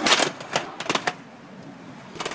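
Skateboard knocking and clacking as it is kicked up on its tail against a parking-meter post: a quick run of sharp clacks in the first second, then a few fainter knocks.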